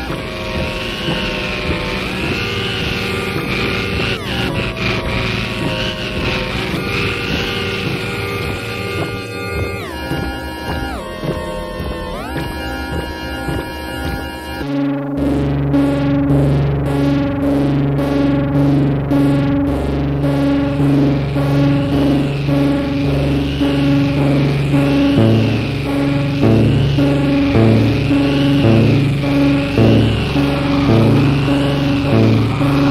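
Music from a 1987 cassette compilation: dense layered held tones with some pitches sliding down and up, then about halfway a sudden switch to a repeating low, pulsing bass pattern with a regular beat.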